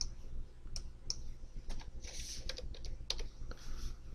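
Computer keyboard keys being typed and mouse buttons clicking, a scattered run of short, sharp taps, as a number is entered into a software field.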